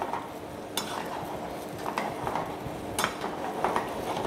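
Pasta and tomato sauce sizzling in a frying pan while a metal spoon stirs and tosses them, scraping and clicking against the pan. There are sharper knocks about three-quarters of a second in and again about three seconds in.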